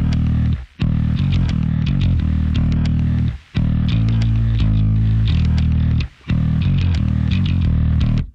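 Loud instrumental heavy metal: distorted electric guitars and bass playing a low, heavy riff over drums and cymbals. The band stops dead for a split second three times: about a second in, in the middle, and about six seconds in.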